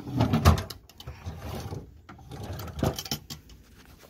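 Wooden drawer being pulled open and pushed shut, sliding with a scrape and bumping. The loudest thump comes about half a second in and a sharper knock near three seconds, with the rustle of a handheld camera moving around.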